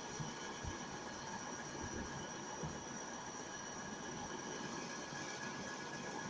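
Steady background hiss with a faint high electronic whine, and a few soft low thumps.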